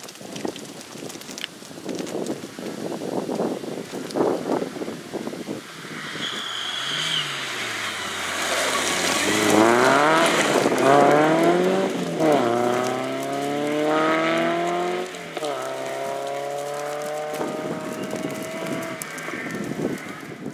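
Renault Clio Sport rally car approaching at speed, its engine growing louder, then revving hard through a string of quick gear changes as it slides through a corner. It then climbs through the gears again and draws away with a held, slowly falling engine note.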